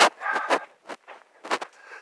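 Footsteps on a sandy dirt trail, a few steps about half a second apart.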